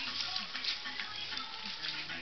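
Garden-hose spray nozzle hissing steadily as the water jet hits a dog's wet coat and the concrete, with music playing in the background.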